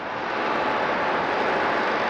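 A steady rushing noise without a clear pitch, as loud as the talk around it.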